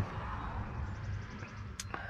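Steady low background noise with one short click near the end.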